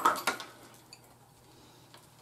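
A metal spoon clinking and scraping against a ceramic bowl as it stirs bread cubes and grated cheese, with a few sharp clicks in the first half second and only faint ticks after.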